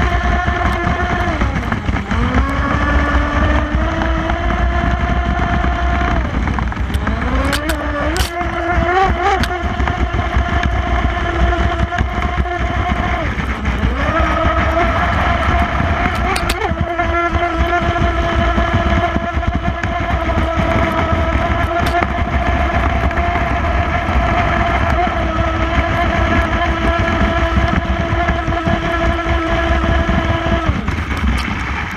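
Brushless electric motor of a Proboat Stiletto 29 RC catamaran whining at speed, over water spray and low wind rumble on the microphone. The whine sags in pitch and climbs back up three times: just after the start, about six seconds in, and near the middle. There are a couple of sharp slaps from the hull hitting the water.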